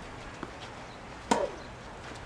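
A tennis ball struck by a racket: one sharp crack about a second and a half in, after a faint knock near the start.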